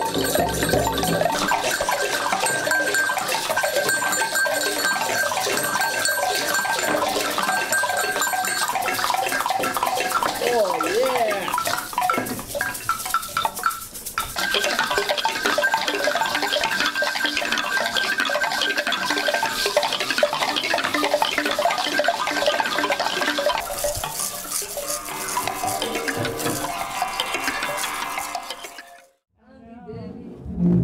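Improvised ensemble of hand percussion: a goat-toenail rattle shaking amid dense clicking and scraping, over sustained metallic ringing tones that start and stop, with a few eerie gliding pitches about ten seconds in. The sound fades out near the end.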